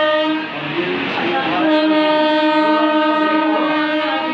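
A horn sounding at one steady pitch in two long blasts: the first stops just after the start, and the second begins about a second and a half in and lasts about two and a half seconds.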